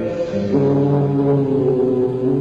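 Live rock band soundchecking, holding a droning chord of several sustained notes that comes in about half a second in and breaks briefly near the end.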